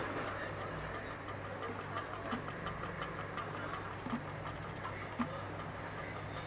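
Homemade pulse motor with a reed switch running: a rapid, even ticking as the magnets pass the switch and the coil is pulsed, with a few louder clicks over a steady low hum.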